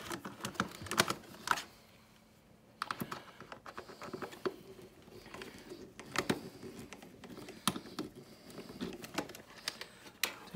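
Screwdriver backing out two small screws from the plastic trim of a refrigerator door's water dispenser: a run of light clicks and ticks, with a short pause about two seconds in.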